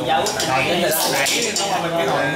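Tableware clinking as people eat: spoons and chopsticks striking bowls and metal pots, several sharp clinks with the loudest about a second in, over background chatter.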